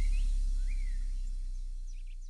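The last low bass note of an upbeat electronic vocal track, fading steadily as the song ends, with a few bird chirps in the outro over it.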